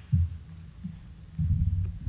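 Dull low thuds of footsteps on the stage, picked up through the lectern microphone over a low steady hum; they grow louder in the second half as the walker reaches the lectern.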